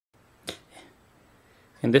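A sharp click about half a second in, followed by a fainter one, before a man's voice starts near the end.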